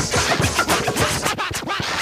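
Mid-1990s hip hop track playing, with DJ turntable scratching cut rapidly over the beat.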